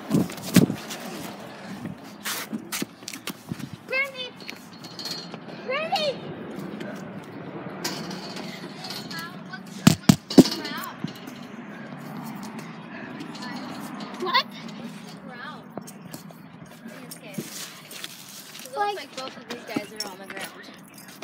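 Children's voices calling out in short, scattered cries over a low background murmur. Sharp knocks and rubbing come from a handheld phone microphone being jostled, with the loudest pair of knocks about ten seconds in.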